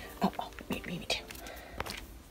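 A person whispering softly in short fragments, with a couple of sharp clicks, one about halfway through and one near the end.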